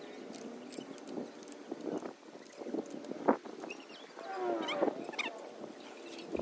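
Scattered light clicks and knocks of hands working the weather station's metal mast and mounting bracket at the roof edge, with one sharper click about three seconds in. A short run of calls falling in pitch sounds a little after the middle.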